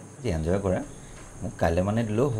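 A man's voice in two short utterances about a second apart, over crickets chirring steadily in the background.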